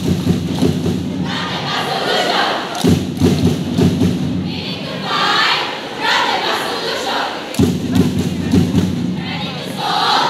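A group of young women chanting loudly in unison, a rhythmic spoken jazz chant, with a sharp thud about three seconds in and another past seven seconds.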